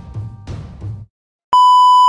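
Commercial music with regular drumbeats cuts off about a second in. After a short silence, a loud, steady, high test-tone beep starts: the reference tone that goes with colour bars.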